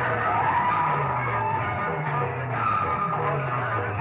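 Music played through a rig of massed horn loudspeakers, with a falling bass figure repeating about every two-thirds of a second under a dense, continuous wash of sound.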